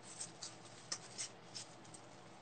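Faint handling noises: a few small clicks and rustles of small objects being moved by hand, over a low hiss.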